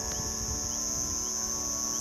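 Crickets chirping at night, a steady high-pitched trill that doesn't let up.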